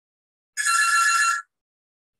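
A single short electronic ring, like a telephone bell, just under a second long and starting about half a second in: several steady high tones with a fluttering trill, starting and stopping abruptly.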